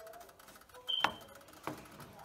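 Two light clicks over a quiet background, the first about a second in with a brief high ring, the second weaker a little over half a second later.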